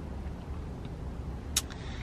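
Low, steady hum inside a car's cabin, with a short sharp sound about a second and a half in.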